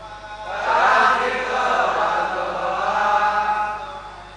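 A congregation chanting a line of a Sanskrit verse together in unison. It starts about half a second in and fades out just before the end.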